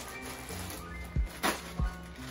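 Background music with a steady beat, and a brief crinkle of a plastic mailer bag being torn open about one and a half seconds in.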